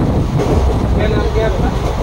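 Steady low rumble inside a moving train's sleeper coach, with wind buffeting the phone's microphone through the open windows. Faint voices sit under it.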